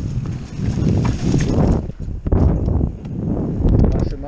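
Full-suspension Rockrider AM100S mountain bike rattling and knocking as it rolls over a rough dirt bank, with wind rumbling on the helmet-mounted microphone.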